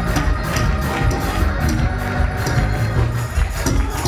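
Lively church praise music from a live band: a bass line under percussion keeping a fast, steady beat, with tambourine-like jingles.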